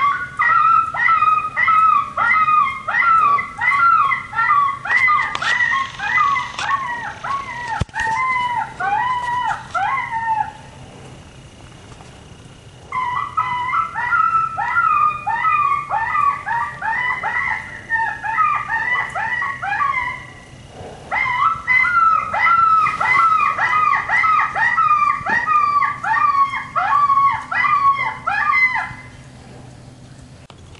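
An electronic predator caller, the 'dead stump' caller, plays recorded canine yipping and howling calls used to call in coyotes. The calls come as rapid, falling notes several times a second, in three long runs broken by brief pauses, the first about ten seconds in.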